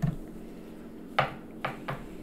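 Three short, light clicks or taps of hard small objects, the first and loudest about a second in, the other two fainter and quicker after it.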